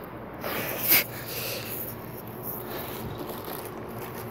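Plastic bag wrapping on a ceiling fan motor rustling and crinkling as hands grip and tug the fan in its box, with one louder crinkle about a second in.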